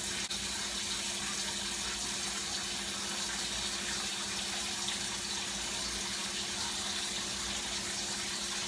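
Steady hiss of a pot of cabbage simmering on a stovetop, with a steady low hum underneath.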